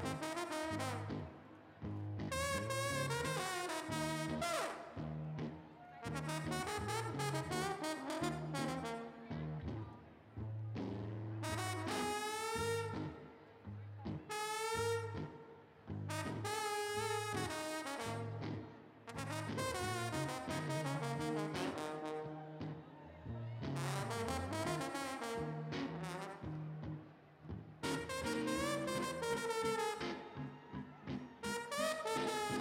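Live trombone playing a blues solo in phrases of a few seconds, each followed by a short pause, over a low bass accompaniment.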